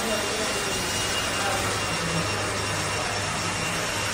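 Hair dryer running steadily: an even rushing of air with a faint high whine from the motor.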